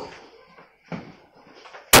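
A cricket bat meeting a hanging practice ball in a back-foot defensive stroke, a single sharp knock near the end, with a fainter thump about a second in.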